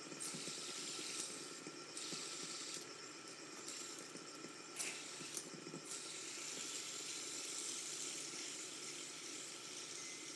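Two fidget spinners, one metal and one white, spinning on their bearings, a faint steady whirring hiss. A few small clicks are heard around the middle.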